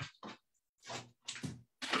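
A sheet of scrap paper being peeled off the table, folded over and crumpled up by hand: a run of short, irregular paper rustles and crinkles.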